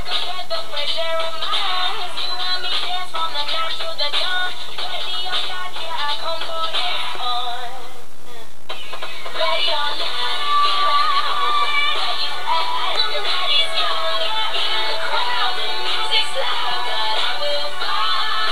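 A synth-pop song playing, with processed, auto-tuned singing over a dense electronic backing. The upper sounds thin out briefly about eight seconds in, then the full mix returns.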